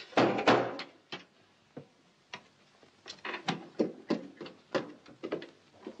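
A short scraping rush in the first second, then after a quiet pause a run of uneven wooden knocks and thumps, about three a second, in a small room.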